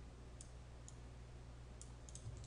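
Three faint computer mouse clicks over a low steady hum of room tone.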